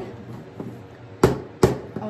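A small plastic cup of pouring paint tapped down hard on the table twice, two sharp knocks close together, to bring air bubbles out of the paint.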